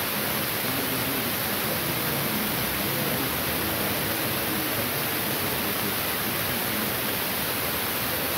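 Steady, even hiss that does not change, with faint voices just audible underneath.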